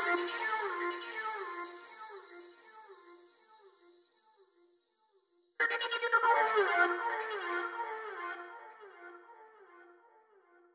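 Psytrance breakdown with the beat gone: a repeating synthesizer pattern of short falling notes fades away, stops for about a second and a half, then comes back in a little past halfway and fades out again.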